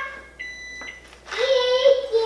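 A short electronic beep of about half a second, then near the end a young child's drawn-out vocal sound.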